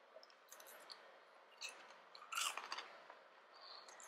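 Faint crunching of a person chewing a piece of bourbon-glazed baked popcorn: a few soft, scattered crunches, the loudest about halfway through.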